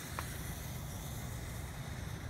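Faint, steady hiss of two burning fuses on 1.4G five-inch canister shells sitting in their mortars, lit by the firing system's electronic matches and counting down to lift. A single small tick sounds a fraction of a second in.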